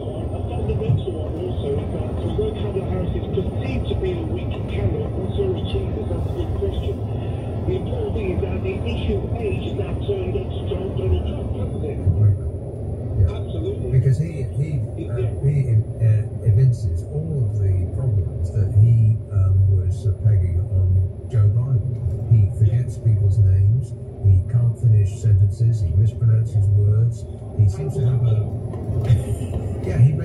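Unclear voices and music heard inside a moving car, over a steady low rumble of road and engine noise.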